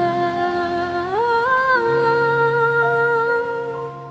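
Slow ballad music carrying a hummed melody: a long held note slides up about a second in, holds, then eases down and softens near the end.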